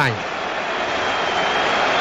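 Steady crowd noise from a full football stadium, an even roar of many voices picked up by the radio commentary microphone, growing slightly louder.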